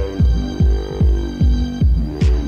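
Electronic dance music from a DJ set: a kick drum with a falling pitch hits about two and a half times a second (around 150 beats a minute) under sustained synth chords.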